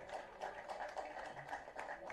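Faint, scattered clapping from an audience, many small irregular claps over a low background murmur.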